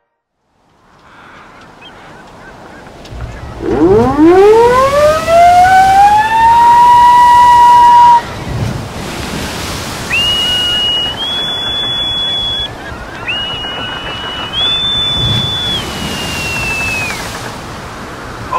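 A siren winds up in pitch over about three seconds, holds a steady tone, and cuts off suddenly, over a rush of sea and wind noise. Then come two high whistled calls, each stepping up in pitch and falling away at the end, typical of a bosun's call piped before a shipboard announcement.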